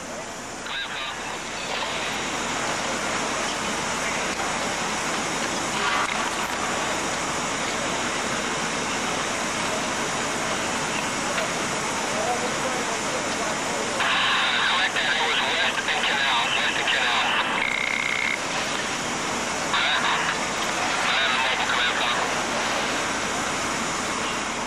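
Steady hissing outdoor city ambience with intermittent voices, loudest from about 14 to 17 seconds in, and a brief steady tone just after.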